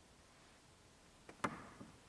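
A single sharp knock about one and a half seconds in, echoing briefly, with lighter clicks just before and after it.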